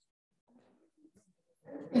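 Near silence in a lecture room with a faint murmur of voices, then a person's voice starts near the end, saying "Yes".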